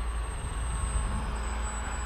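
Wind rumbling on the microphone, with a faint steady hum from a Bixler RC biplane's electric motor and propeller in flight.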